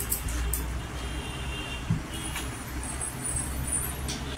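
Mutton curry poured from a small bowl onto rice on a plate, then fingers mixing rice and curry, giving soft wet handling sounds with a small knock just under two seconds in. Under it runs a steady low background rumble like distant traffic.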